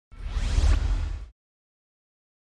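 A whoosh sound effect for a logo reveal: a noisy sweep over a deep rumble, with a rising tone inside it, lasting about a second and cutting off suddenly, followed by silence.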